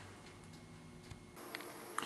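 Faint room tone: a low steady hum with a few faint ticks. About two-thirds of the way through, the hum drops away and a faint high steady tone takes its place.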